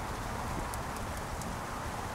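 Steady low outdoor background rumble with a few faint light ticks or taps about a second in.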